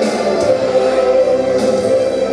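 Electronic rock band playing live, with held, choir-like vocal notes over the band, heard from within the audience.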